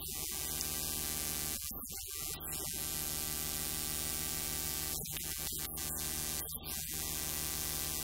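Steady electrical hum from the sound system, a low buzz with many overtones, unbroken and without changes in pitch.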